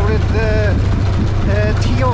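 V-twin cruiser motorcycle engine running as the bike rides along, a steady low rumble heard from the rider's helmet microphone.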